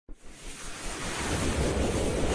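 Intro-animation whoosh sound effect: a rushing wash of noise that swells steadily louder.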